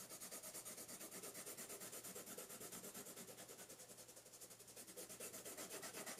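Grizaye oil/wax hybrid colored pencil shading back and forth on paper in quick, even strokes, about ten a second. The pencil is laying down a layer of blue with light pressure, and the sound is faint.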